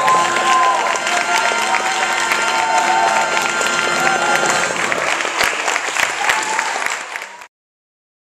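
Audience applauding, with cheers and voices calling out from the crowd; the sound cuts off suddenly near the end.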